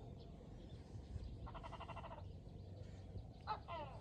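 Faint, distant animal calls: one held call lasting under a second about a second and a half in, then two short falling calls near the end, over quiet background hum.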